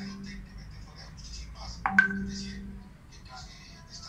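A messaging-app notification chime, a short click and a ringing tone that dies away over about a second, sounds about two seconds in as a new chat message arrives. Faint voices murmur underneath.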